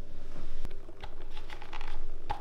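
Light plastic clicks and rustling as sunglasses are slotted into the vents of a MET Manta cycling helmet, a few separate clicks about half a second and a second in, then a quick cluster of them near the end.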